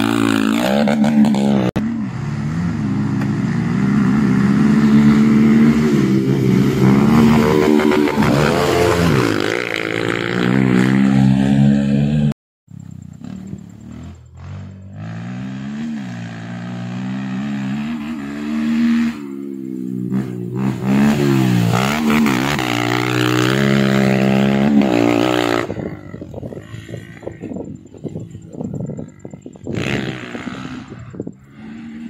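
Honda CRF150 dirt bike's single-cylinder four-stroke engine revving up and down as it is ridden through corners, its pitch climbing and dropping with each throttle change. The sound breaks off briefly about twelve seconds in, then the engine is heard again, quieter, still rising and falling.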